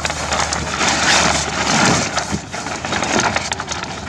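Stiff sailcloth of a Pacer dinghy's jib crackling and rustling as it is handled and shaken out, loudest about one to two seconds in.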